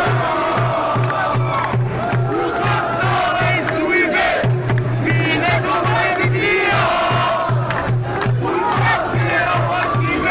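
Crowd of protesters chanting and shouting slogans in unison, over a low steady beat that comes about three times a second.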